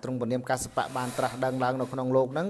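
A man preaching in Khmer, his voice held at a fairly even pitch, with a brief hiss about half a second in.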